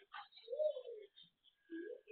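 Low cooing bird calls: one arched coo lasting about half a second, starting about half a second in, and a shorter rising one near the end.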